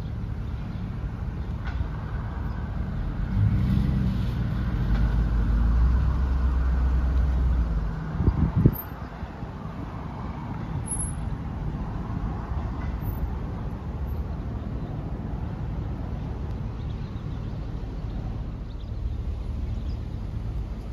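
Low vehicle engine and road rumble heard from inside a car inching forward in slow traffic. The rumble swells from about three seconds in, a short thump follows about eight seconds in, and then the rumble settles back to a steady, lower level.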